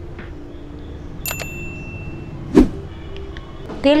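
Mustard oil being poured into a heated non-stick kadai, over a steady low hum. A sharp tick with a brief high ring comes just over a second in, and a loud knock at about two and a half seconds.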